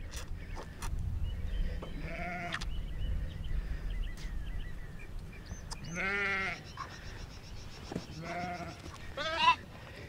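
A lamb bleating in short, wavering calls several times, loudest about six seconds in, while it is held and dosed with dewormer by syringe. A low rumble of wind on the microphone runs under the first half.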